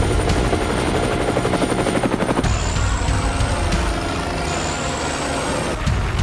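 Helicopter sound effect: rapid, regular rotor-blade chopping over a heavy low rumble, with a thin high whine that shifts and climbs slightly about halfway through.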